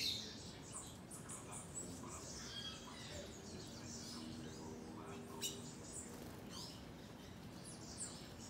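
Wild forest birds calling: many short, high chirps and quick sweeping notes, overlapping and scattered, with a faint low hum in the background for a couple of seconds in the middle.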